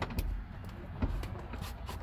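Light handling noise from a hand pressing on and then gripping a newly fitted plastic interior door handle, with a couple of faint taps, over a low steady rumble.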